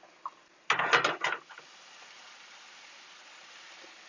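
A metal skillet clattering against the gas stove's grate as the mixed seafood goes into the sauce: a short burst of rattling knocks about a second in. Then a steady hiss from the simmering sauce and the boiling pasta pot.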